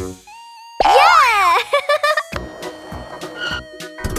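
Cartoon music with a loud sound effect about a second in, a wobbly pitch swooping up and down like a boing, followed by short plucked-sounding notes and a steady music bed.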